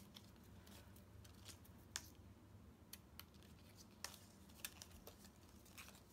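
Small paper snips cutting thin die-cut cardstock: a string of faint, sharp snips, irregularly spaced, about a dozen in all.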